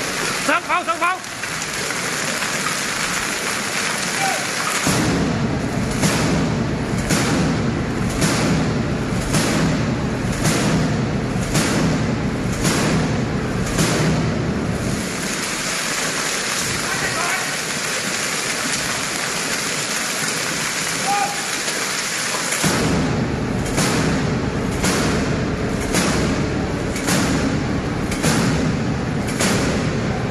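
Twin-barrelled anti-aircraft gun firing steady strings of shots, about one and a half a second, fired into the sky to bring on rain or hail. The gunfire comes in two runs, one starting about five seconds in and one about twenty-three seconds in, over a constant hiss of hail and rain falling.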